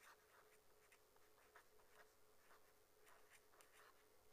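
Faint scratching of a pen writing a couple of words on paper, a quick run of short irregular strokes.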